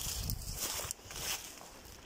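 A few soft footsteps on loose river pebbles, over a faint background hiss.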